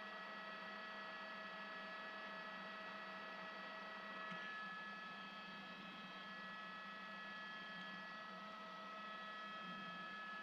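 Faint, steady hum and hiss of a news helicopter's cabin heard over the crew's open intercom, with several steady whining tones above it; one lower tone drops out about four seconds in.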